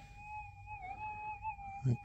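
Minelab GPX 6000 metal detector giving a steady, fairly faint single tone that wavers slightly in pitch about halfway through, with the gold specimen from the dug target close by.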